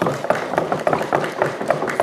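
Audience applause in a hall, with many overlapping sharp claps or raps at an irregular, dense pace, welcoming guests.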